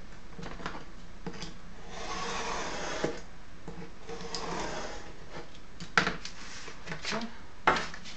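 Snap-off utility knife drawn along a steel ruler, scoring through oak tag pattern card in two scratchy strokes, followed by a few sharp knocks as the ruler and card are handled near the end.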